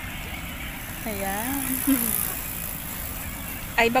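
A steady low rumble and hiss of outdoor background noise. A voice sounds briefly about a second in, and a short knock and speech come at the very end.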